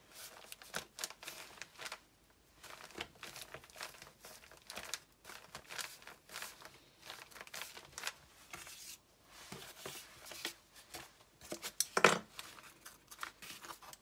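Paper crinkling and rustling in short, irregular bursts as hands press down and smooth a journal page layered with glassine paper and fabric, with a louder rustle near the end.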